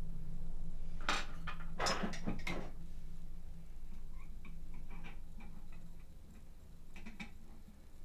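Light clicks and taps of small CNC router parts being handled and fitted by hand: a cluster in the first few seconds, then a few fainter ticks. Under them runs a low steady hum that slowly fades.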